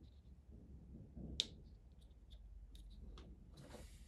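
Quiet handling of a wire and a small heat-shrink sleeve between fingers: faint rustles and small clicks, with one sharp click about a second and a half in.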